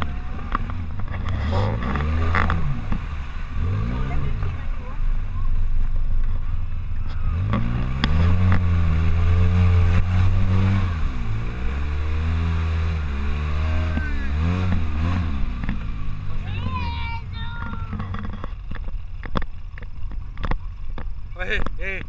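Polaris RZR side-by-side's twin-cylinder engine heard from the cab, revving up and down as it crawls through grass on a muddy track, loudest about a third of the way in and easing off in the last few seconds.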